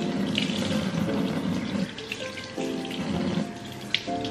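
Kitchen faucet running, its stream splashing over and into an insulated steel water bottle being rinsed in the sink, with a short knock just before the end. Lo-fi background music plays along.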